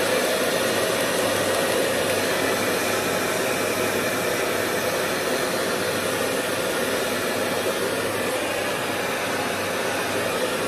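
Handheld hair dryer running steadily, a constant loud blow of air with a low hum underneath.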